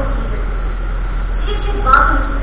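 A steady low hum with a constant hiss behind it, broken near the end by a short click.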